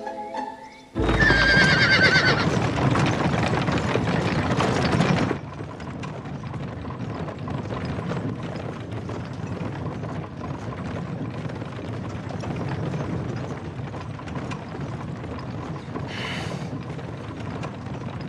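A horse whinnies loudly about a second in, then a horse-drawn carriage rolls on steadily with hoofbeats, and there is a brief higher sound near the end.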